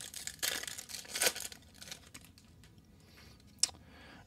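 Foil trading-card pack being torn open and its wrapper crinkled, in two louder bursts within the first second and a half, then softer rustling and a short tick near the end.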